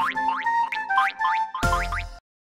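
Cartoon jingle with a quick run of rising boing sound effects over a held note, then a louder, fuller chord near the end that stops abruptly.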